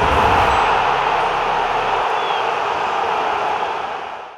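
Logo-sting sound effect: a loud, steady hiss of noise like TV static, with a deep low rumble that dies away about half a second in.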